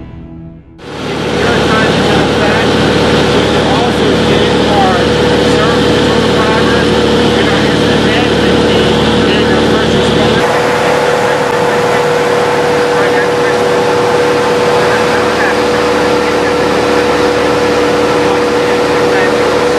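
Steady drone of a Cessna 182's single piston engine and propeller heard inside the cabin, starting just after a second in, with a constant hum running through it.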